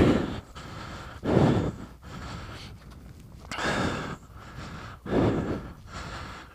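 A man breathing heavily while walking, with three audible exhales about a second, two seconds and a second and a half apart.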